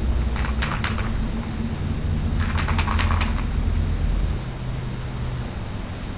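Aerosol spray paint can spraying in two short hissing bursts, about half a second in and again from about two and a half seconds, over a steady low rumble.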